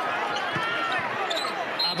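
Basketball court sounds: sneakers squeaking on the hardwood floor in short, rising and falling squeals, and a basketball thumping on the court a few times.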